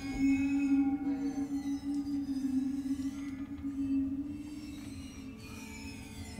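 Waterphone's bronze rods bowed, giving one long eerie metallic note with fainter higher tones that waver and slide above it, fading away about five seconds in.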